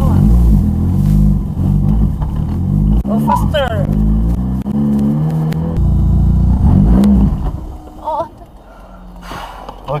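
Nissan Silvia S15's engine revving hard, its pitch climbing and dropping again and again, then falling much quieter about eight seconds in.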